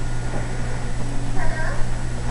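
Steady low electrical hum, with a short, high vocal sound that bends in pitch about one and a half seconds in.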